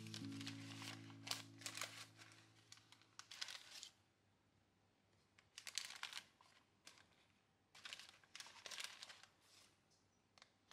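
Baking paper lining a frying pan crinkling and rustling in short bursts as it is folded and handled around dough rolls. A music track fades out in the first few seconds.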